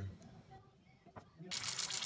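Stuffed red peppers sizzling as they fry in oil in a pot, the sizzle starting suddenly near the end after a quiet stretch with one faint tap.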